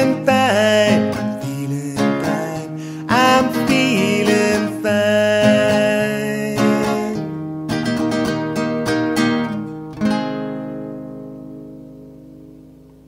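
Instrumental outro of an acoustic guitar song: strummed chords under a lead melody with pitch bends, ending on a final chord about ten seconds in that rings out and fades away.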